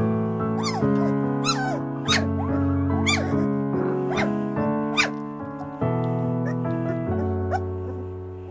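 Background music of sustained, piano-like chords, over which 2.5-week-old golden retriever–flat-coated retriever cross puppies give several short, high squeaks and whimpers.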